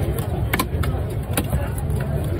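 Long knife chopping a slab of fresh tuna into cubes on a wooden log block: a few sharp knocks as the blade goes through the fish into the wood, about half a second in and again about a second and a half in. Under them run a steady low rumble and the voices of a market crowd.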